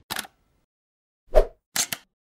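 Animated-intro sound effects: a quick double tick at the start, a louder pop with a low thump about a second and a half in, and another quick double tick near the end.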